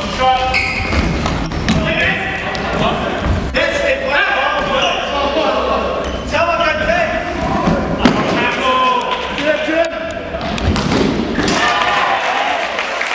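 Players shouting and calling to each other in a large indoor hall, with the thuds of a futsal ball being kicked and bouncing on the wooden floor.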